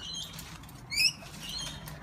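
Rainbow lorikeets chirping in short, high squeaky calls while feeding. The loudest is a quick rising chirp about a second in, with a few softer ones after it.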